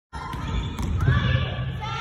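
Volleyballs being hit and bouncing in a gym hall, a few sharp thumps in the first second, with players' voices calling out over the court's echo.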